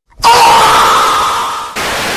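A man's loud, drawn-out scream of "Oh!", fading away over about a second and a half. It is cut off by a short burst of TV static hiss near the end.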